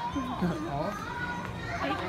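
Background voices of people talking, with children's voices among them.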